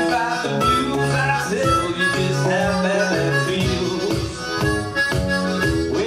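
Blues harmonica played into a microphone, holding and bending notes over a hollow-body electric guitar strumming a steady beat about twice a second.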